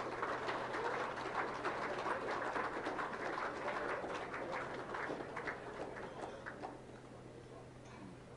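Audience applauding, a dense patter of many hands clapping that thins out and dies away near the end, over a steady low hum.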